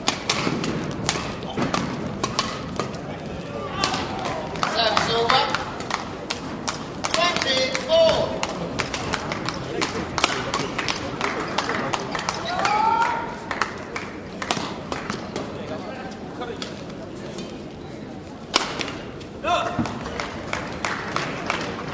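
Badminton match play: many sharp, irregular knocks of racket strikes on the shuttlecock and footfalls on the court, with voices over them.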